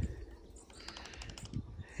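Faint, scattered crackling of dry twigs and pine needles underfoot, with a few light clicks about a second in.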